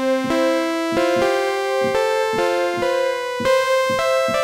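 Buzzy synthesizer bed patch from The Foundry sample instrument, played as a string of keyboard notes, a new one about every half second. Keyboard tracking is switched off, so one steady pitch keeps sounding underneath while the upper overtones shift from key to key.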